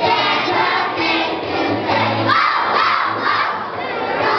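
A group of young children singing together with musical accompaniment, breaking into a loud group shout about halfway through.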